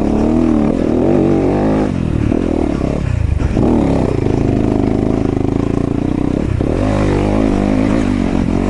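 Yamaha YZ250FX dirt bike's single-cylinder four-stroke engine under way, revs rising and falling with the throttle, easing off briefly around two and three seconds in and again near six and a half seconds.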